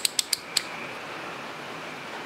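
Fluke 116 multimeter's rotary selector switch clicking through its detents as it is turned to the capacitance setting: about four quick, sharp clicks in the first half second.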